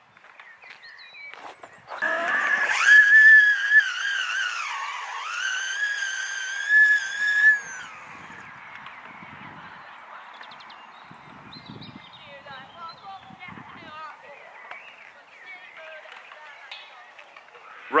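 High-pitched electric motor whine from a single-motor 3500 W electric skateboard driven on grass. It starts about two seconds in, rises, dips, then holds steady for about five seconds before cutting off: the single driven wheel losing traction on the grass. After that, quieter outdoor background.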